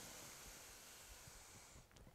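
Faint, slow inhale through the nose, near silence, stopping just before the end.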